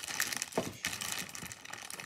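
Continuous crinkling and rustling as something is handled by hand at the table, with small irregular crackles throughout.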